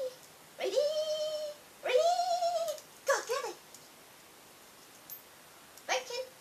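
A cat meowing three times, two drawn-out meows and then a shorter, broken one.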